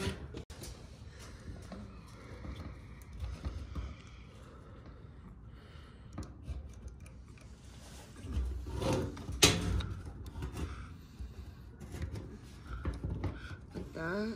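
Small clicks and rustles of hands working stripped fuel pump wires into a blue butt-splice connector, with low handling rumble and a sharper click about nine and a half seconds in.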